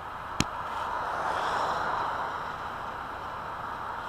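A single sharp click about half a second in, then a steady rushing noise that swells over the next second and holds.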